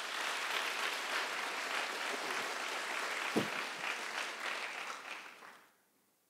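Audience applauding in a hall, dying away near the end, with one louder thump a little past the middle.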